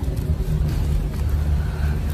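Steady low rumble of outdoor noise picked up by a handheld streaming microphone, with no clear voice over it.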